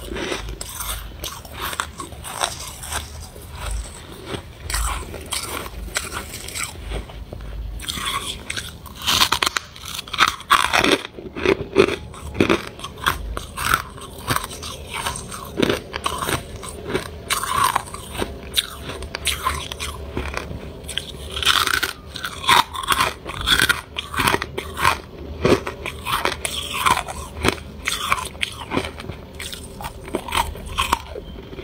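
Close-miked biting and chewing of soft, snowy freezer frost: a dense, irregular run of crisp crunches that grows louder and busier about a third of the way in.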